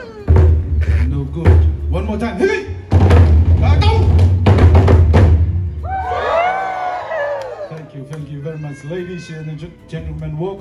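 Polynesian drums played loud and fast for about five seconds, with heavy booming beats and sharp strikes. Then a long shouted call, with lighter percussion and voices after it.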